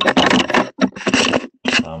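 A man talking over a video call, with short pauses between phrases.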